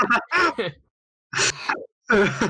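Short bursts of voices and laughter, broken by about half a second of dead silence in the middle.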